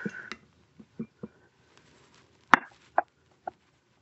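Bar-top cork stopper being twisted and worked loose in the neck of a glass gin bottle: a few small clicks and knocks, with one sharp click about two and a half seconds in.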